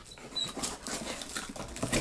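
A cardboard shipping box being unpacked by hand: irregular rustling, scraping and crinkling of the box flaps and packing paper as a cap is lifted out, with a brief faint high squeak about half a second in.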